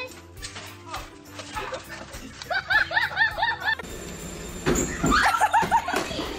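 A person laughing in a run of short repeated bursts about halfway through, then laughing again near the end.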